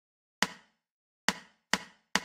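Count-in clicks for a drum play-along's lead-in bar: three short, sharp knocks. The first two are slow and well apart; the third follows quickly after the second.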